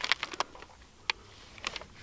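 A ream of copy paper being handled and its wrapper pulled open: a few short, scattered rustles and crinkles of paper.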